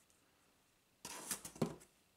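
Bagged comic books handled, a short rustling, scraping slide of plastic comic bags against each other and the cardboard about a second in.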